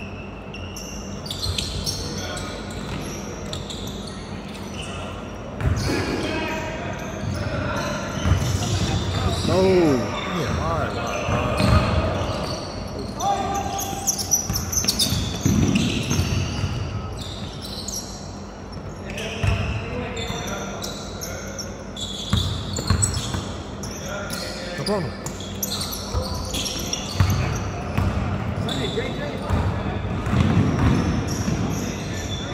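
Basketball being dribbled on a hardwood gym floor, repeated bounces echoing in the large hall, with a few sneaker squeaks and indistinct players' voices.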